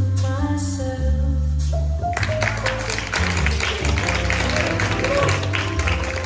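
Slow sung ballad with a steady bass line. About two seconds in, a burst of clapping and applause from onlookers starts and carries on over the music.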